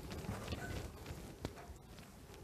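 Faint handling sounds as hands shift a cloth tape measure along a paper strip on a fabric-covered table: soft rustling with a couple of light taps, one about half a second in and a sharper one about one and a half seconds in.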